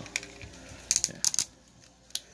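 A few sharp clicks of hard plastic parts on a Transformers Masterpiece Shockwave figure being moved and pressed into place by hand, most of them in a quick cluster about a second in.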